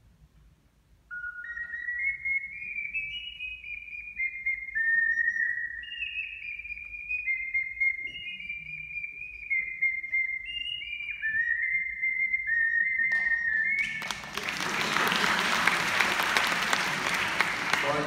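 A tiny pendant-type ocarina playing a short, high, clear melody of quick stepwise notes. About a second after it stops, the audience applauds, louder than the playing.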